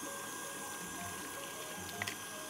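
KitchenAid Artisan stand mixer motor running steadily at a low level, beating choux paste as an egg is worked in.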